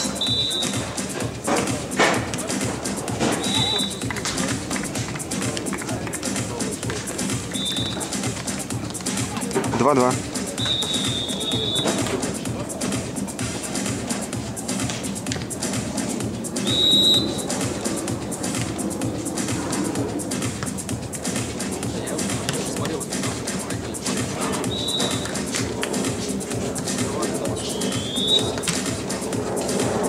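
Background music runs throughout. A referee's whistle gives several short, high blasts, one of them longer at about ten seconds. A voice calls the score ("two-all") about ten seconds in.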